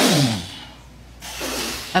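A person's short vocal exclamation that falls steeply in pitch, then a brief breathy noise about a second and a half in.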